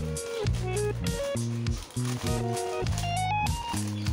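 Background music: a plucked guitar melody moving in short stepped notes over bass notes.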